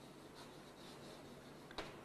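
Faint chalk writing on a blackboard, with a short tap near the end.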